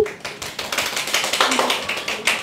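Applause: many hands clapping, building from about half a second in, after a single sharp click at the very start.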